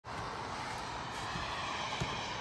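A steady, even outdoor rush with no distinct events: the background noise of a snowy residential street.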